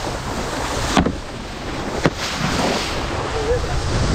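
Wind and water noise rushing over an action camera's microphone as it moves fast over the water, with two sharp knocks about a second apart.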